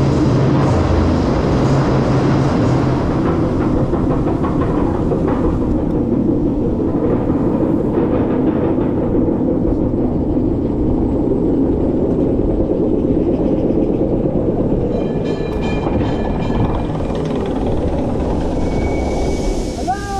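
Roller coaster chain lift hill of a B&M dive coaster, with a steady clattering rumble of the chain and train as the cars climb. The rumble eases a little near the end as the train nears the top.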